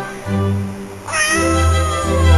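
A domestic cat's meow: one long call beginning about halfway through, its pitch sliding slowly down. Music with a low bass line plays under it.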